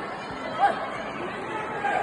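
Chatter of many voices in a large hall, with one short, sharp, high sound about half a second in.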